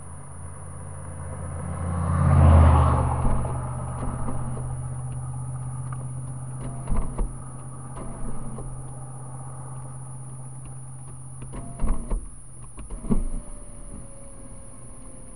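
A stopped car's engine idling with a steady low hum. A vehicle passes about two seconds in, rising and fading, and a few short knocks come around the middle and near the end.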